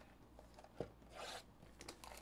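Faint handling of a sealed trading-card box: a light knock, then a short rustle as the plastic shrink wrap is torn open.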